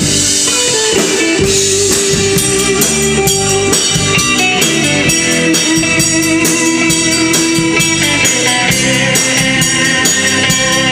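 Live band playing an instrumental break in a rock-and-roll song: an electric guitar carries the lead in long held notes over a steady drum beat.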